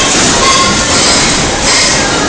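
Horizontal flow-wrap packaging machine running, a loud steady mechanical noise as it wraps stacks of disposable plastic bowls in film.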